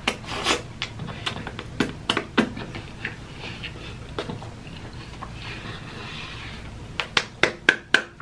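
Close-miked chewing of a chicken sandwich, with wet mouth sounds and scattered lip smacks. Near the end comes a quick run of five sharp smacks.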